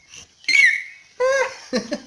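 A small child's brief high-pitched squeal about half a second in, falling slightly in pitch, followed by short voice sounds.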